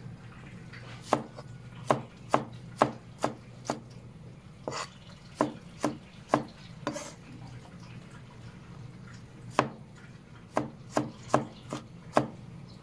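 Cleaver chopping tomatoes on a plastic cutting board: sharp knocks in three runs of quick strikes, about two or three a second, with a pause of a couple of seconds before the last run. A steady low hum sits beneath.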